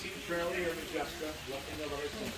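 Indistinct voices of people talking, fainter than close speech, with no distinct mechanical sound from the train.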